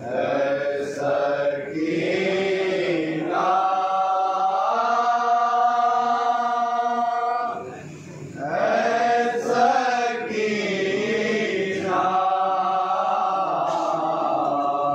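A group of men chanting a noha, an Urdu mourning lament, in unison and without instruments. They hold long notes, with a short break about eight seconds in.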